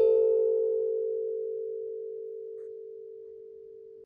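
Steel tongue drum: one note struck with a mallet at the start, ringing over the note before it and slowly fading, then cut off suddenly at the end.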